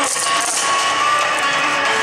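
Yosakoi dance music played loud over speakers, with a few sharp clacks of the dancers' wooden naruko clappers in the first half second.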